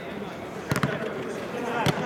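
Football kicked on artificial turf: a quick couple of touches a little under a second in, then a harder kick near the end.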